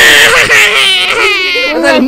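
A child's high-pitched voice wailing loudly in a drawn-out, cry-like sound.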